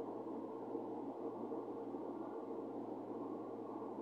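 Steady low hiss of room tone, with no speech or music.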